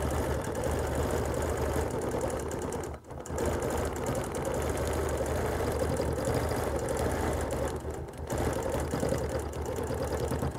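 Bernina Q20 sit-down longarm quilting machine running steadily while free-motion quilting along the marked pattern. Its stitching dips briefly about three seconds in and again near eight seconds.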